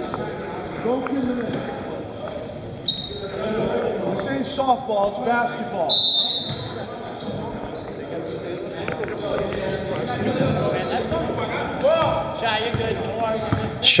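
Voices of players and spectators echoing in a gymnasium, with a basketball bouncing on the hardwood floor and a few short, high-pitched tones.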